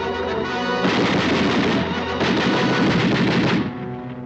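Film sound effect of rapid, sustained rifle and machine-gun fire. It breaks in about a second in and stops shortly before the end, with a brief lull in the middle, over an orchestral film score.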